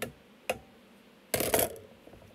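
A metal bench scraper knocking and scraping against a baking dish while it turns cut red potatoes: a short clink at the start and another half a second later, then a louder clattering scrape about a second and a half in.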